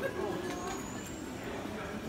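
Busy street ambience: passers-by talking, over a steady background noise of the street.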